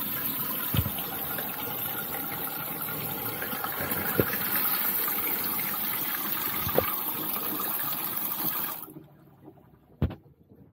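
Spring pull-down faucet spraying water into a stainless steel sink: a steady hiss and splash of the spray on the metal, with three short thumps along the way. The flow cuts off suddenly about nine seconds in.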